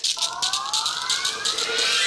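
A shekere, a gourd shaker covered in a net of beads, shaken rapidly. Under it a sound effect of several tones slides steadily upward in pitch.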